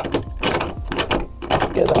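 Metal turnbuckle on a roll-off observatory roof being unscrewed by hand: a quick run of clicks and rattles, about five a second.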